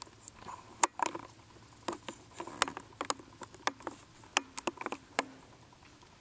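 Footsteps crunching on dry twigs and forest litter: irregular sharp snaps and crackles, a few a second, stopping a little after five seconds in.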